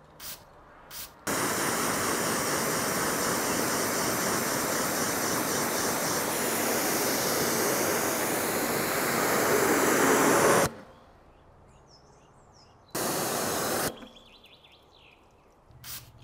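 A trigger spray bottle squirting twice. Then a pressure-washer jet of water hits the car's paintwork in one long, steady rinse of about nine seconds, followed by a second, one-second burst. The spray coating is being rinsed across the wet paint.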